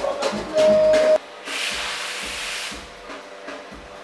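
Live band with drum kit playing during a sound check, drum hits under a held note, cutting off abruptly about a second in. A steady hiss follows for about a second and a half, then only low background sound.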